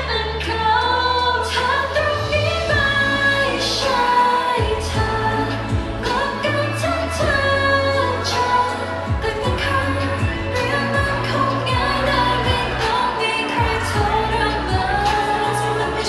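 Female pop vocals sung into handheld microphones over an amplified pop backing track with a pulsing bass beat and sharp percussion hits.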